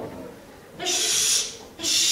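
Two long, breathy hisses from a performer, about a second apart.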